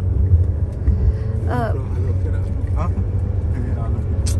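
Steady low rumble of a car running on the road, with a couple of short voice fragments over it.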